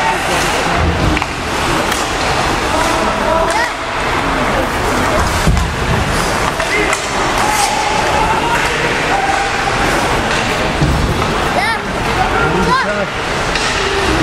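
Ice hockey play heard from the stands: skates scraping the ice and occasional stick and puck clacks, over a steady hum of spectators' voices.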